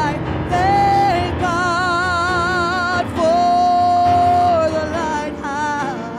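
Live gospel worship music: a singer with strong vibrato over band accompaniment, holding one long note about halfway through.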